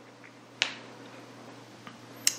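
Faint steady room hum with one short, sharp click about a third of the way in and a fainter tick near the end.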